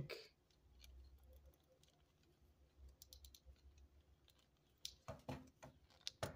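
Faint, scattered clicks and taps of a plastic transforming robot figure's parts being handled and pushed into place, with a few louder clicks near the end.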